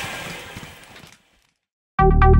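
Rustling handling noise that fades away over about a second, then silence.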